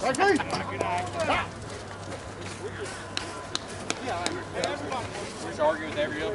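Men's voices talking near the start and again in the second half, with a few sharp clicks scattered between them.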